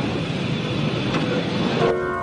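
Steady background noise of a busy casino floor, with no single sound standing out. Near the end a held chord of music comes in.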